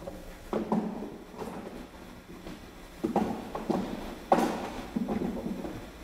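Wooden beehive frames knocking and scraping against each other and the wooden hive box as a frame is lifted out and set back in, about six short knocks, the loudest a little past the middle.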